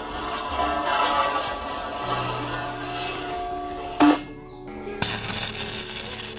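Background music for about four seconds, then, about five seconds in, the loud, steady hiss of a stick-welding arc starts as a steel tube is welded to a turbine base.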